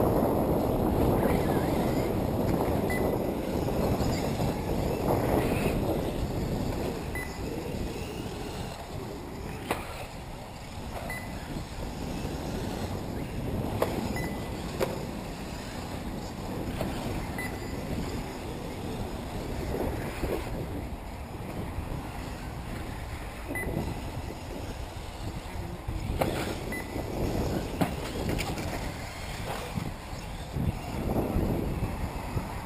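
Electric 1/8-scale RC off-road buggies racing on the track, heard under wind rumbling on the microphone that is strongest in the first few seconds. A few faint short high beeps and sharp clicks come through at intervals.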